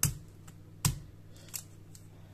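Tip of a knife made of tofu pressing against the dry, papery skin of an onion, giving sharp crackling clicks: two loud ones a little under a second apart, then a fainter one.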